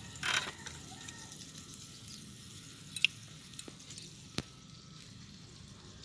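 Hairy cockles faintly sizzling on a wire grill rack over charcoal, with a short hiss near the start and two sharp clicks a second and a half apart around the middle.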